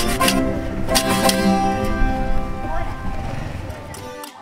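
Acoustic string ensemble of guitars and small plucked string instruments playing a folk song: strummed chords near the start and about a second in, then held notes that ring and fade toward the end.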